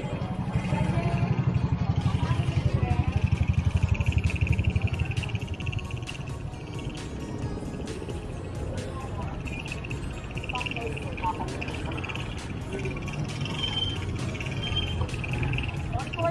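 Small motorcycle engine running close by in busy street traffic, loudest in the first five seconds and then fading, with voices and music in the background.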